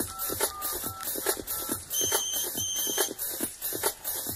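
Instrumental intro of a Thai pop song with a steady, fast beat and short melody notes. About two seconds in, two short high beeps sound one after the other.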